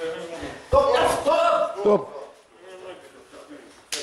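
A man's voice calling out loudly for about a second, starting with a sudden onset near the start, followed by quieter voices and a single sharp knock or slap just before the end.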